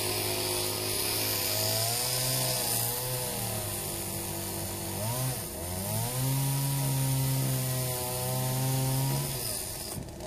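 Gasoline chainsaw running at speed while cutting into a tree stump. Its engine pitch wavers, drops briefly about five seconds in and climbs back, then falls away near the end. The owner puts the slow cut down to a dull chain that isn't throwing wood chips.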